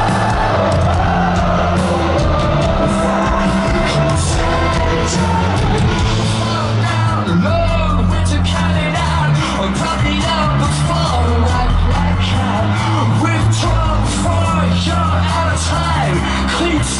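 A rock band playing live and loud: a heavy, driving electric bass line and drums, with a voice singing over it from about halfway in.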